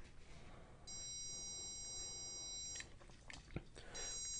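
Small piezo buzzer driven by an Arduino sounding a steady, high-pitched alarm tone, triggered by a PIR motion sensor detecting movement. The tone comes in about a second in, cuts off a little before three seconds, and starts again at the end.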